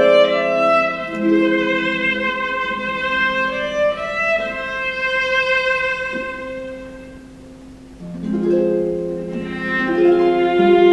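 Viola and concert harp playing together: long held bowed viola notes over harp accompaniment. Around seven seconds in the music thins and grows quiet, then comes back louder at about eight seconds.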